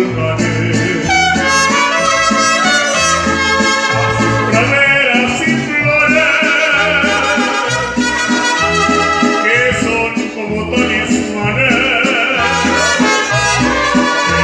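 Mariachi band playing: violins with vibrato over a bass line that steps back and forth between two low notes, with a singing voice.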